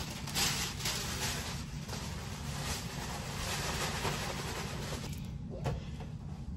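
Tissue paper and a paper gift bag rustling and crinkling as they are handled, over a steady low hum. The rustling eases off about five seconds in.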